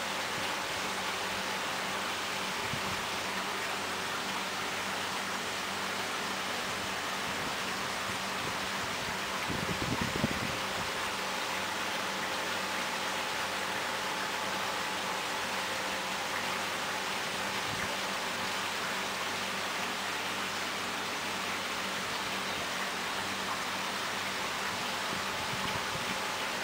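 Steady hiss of background noise with a faint hum, with a brief low rumble and bump about ten seconds in.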